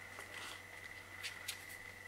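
Faint rustling of a photobook album's paper pages and a photo card being handled, with a few soft ticks.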